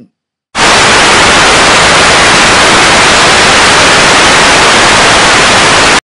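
Very loud television static, a steady white-noise hiss that cuts in abruptly about half a second in.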